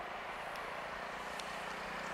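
Indian Railways passenger train running away over the rails: a fairly faint, steady noise of wheels on track with a low hum beneath and a couple of faint clicks.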